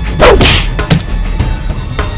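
A whip-like swish of a swung blow, sweeping down in pitch, followed by a sharp hit just under a second in, over background music.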